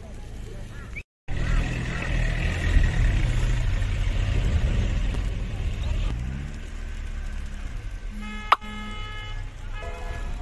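Street traffic: a low, heavy vehicle engine rumble, then a car horn honking briefly near the end, twice, with a sharp click between the honks. The sound drops out completely for a moment about a second in.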